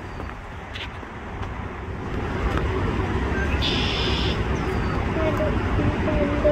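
A steady low outdoor rumble that grows louder about two seconds in, with a short buzzy high-pitched call near the middle and a faint voice near the end.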